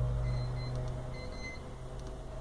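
Low steady hum with a few faint high tones, easing down over the first second and a half and then holding steady.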